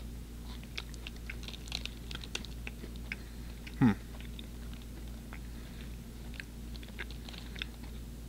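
A person chewing a mouthful of soft caramel stroopwafel, heard as many small wet clicks and ticks; the wafer is soft and does not crunch. A short "hmm" comes about four seconds in.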